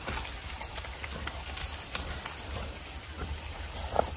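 Faint, scattered crackles and rustles of dry leaf litter and twigs being disturbed, over a low steady rumble.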